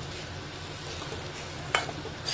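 Metal spatula stirring shredded vegetables and boiled eggs in a sizzling metal wok, with a sharp scrape of the spatula on the pan near the end.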